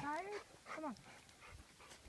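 A woman's voice coaxing dogs ('Come on'), with a tired dog panting faintly between the words after a long hike.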